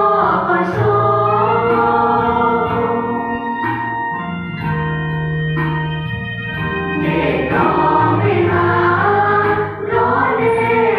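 Mixed youth choir singing a hymn, with long held low notes beneath the voices. The singing thins out a little in the middle and swells fuller again about seven seconds in.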